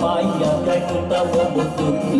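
Live electronic keyboard playing an instrumental passage of a Vietnamese pop song: sustained chords and melody over a steady programmed percussion beat, with no singing.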